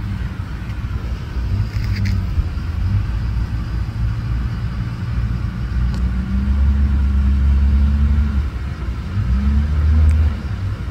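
A motor vehicle engine running with a low, steady hum, growing louder about six seconds in and again near the end.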